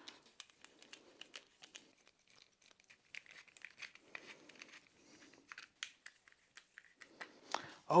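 Faint, scattered small clicks and scraping of a screwdriver backing Phillips-head screws out of a crossbow magazine, with light handling rustle.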